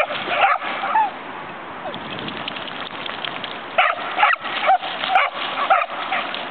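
A five-month-old Australian kelpie barking in short barks: a few in the first second, then a quick run of about six near the end.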